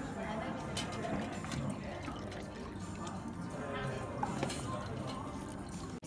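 Dog lapping water from a metal bowl, with scattered wet clicks, over background voices and music.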